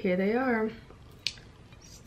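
A voice sounds a short, wordless up-and-down phrase, then it goes quiet but for a single light click a little past a second in.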